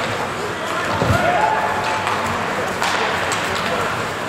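Ice hockey rink during play: skates scraping the ice and sticks knocking on the puck, with voices calling out. A sharp knock comes near three seconds in.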